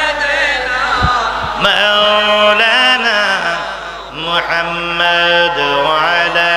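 A man's voice chanting a devotional zikir melody through a microphone and loudspeakers, in long held notes that waver in pitch, with a short dip about four seconds in before the chant picks up again.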